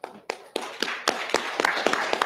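Audience applauding: a few scattered claps that build within about half a second into steady clapping.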